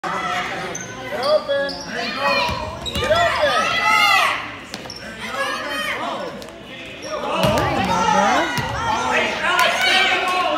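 Basketball bouncing on a gym floor during a children's game, with players and spectators calling out and the sound ringing in a large hall.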